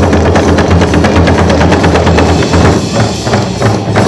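Korean rope-laced barrel drums (buk) struck with wooden sticks in a fast, dense drum roll over a deep, ringing low resonance. The strokes thin out into separate, evenly spaced beats in the last second or so.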